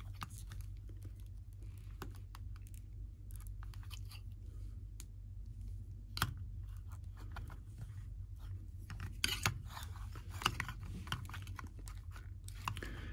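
Hard plastic action figure and its bow being handled and posed by hand: scattered faint clicks and rubbing, with a few sharper clicks about six seconds in and again near the end, over a steady low hum.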